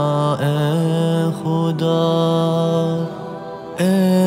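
Unaccompanied male voice singing a vocals-only Urdu nasheed, holding one long steady note for about three seconds, then briefly quieter before the next phrase begins near the end.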